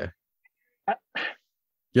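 Two brief vocal sounds from a man about a second in, a short syllable and then a quick breathy huff, between stretches of near silence.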